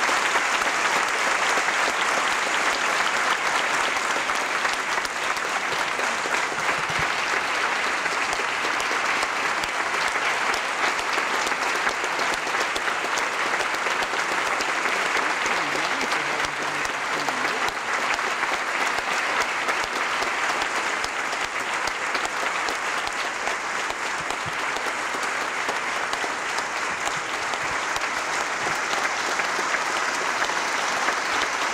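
A theatre audience applauding steadily, a dense sustained clapping from a full house.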